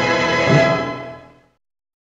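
Orchestral trailer music ending: a final chord with a last accent about half a second in, dying away to silence by about a second and a half in.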